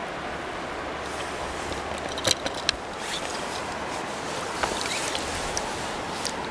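Steady rushing of river water with wind rumbling on the microphone, and a few soft knocks and splashes about two to three seconds in as a trout is handled in a landing net in the water.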